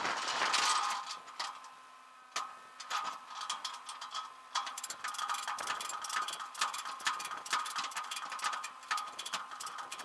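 Ratchet of a wheel tie-down strap on a flatbed tow truck clicking rapidly as the strap is tightened over the front tyre, after a short noisy rush in the first second. A faint steady hum runs underneath.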